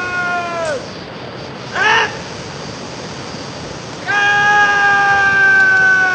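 Drawn-out shouted parade-ground commands: a long call held on one slightly falling pitch that drops away at its end, a short shout about a second later, then another long held call starting about four seconds in.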